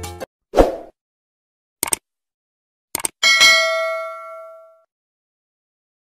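Subscribe-button animation sound effects: a short pop, then a sharp double click, another double click about a second later, and a bell-like ding that rings and fades away over about a second and a half. The tail of background music cuts off just before them.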